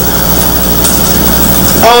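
Steady low hum and hiss filling a pause in a speech, heard through the microphone and sound system; a woman's voice resumes near the end.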